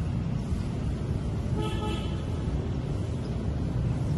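Steady low rumble of outdoor city traffic noise, with a short vehicle horn toot about a second and a half in.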